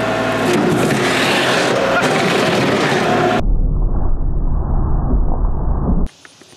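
Kubota L3301 tractor's three-cylinder diesel engine running steadily as the loader bucket presses down on a large can. About three and a half seconds in, the sound turns abruptly dull and deep, losing its high end.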